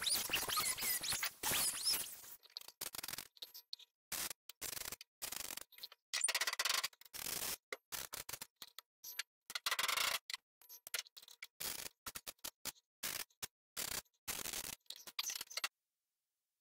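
A four-inch angle grinder runs on the sheet-metal floor pan for the first couple of seconds. Then a MIG welder lays a string of short tack welds, each a brief crackle with silent gaps between, tacking the new floor pan to the cab floor.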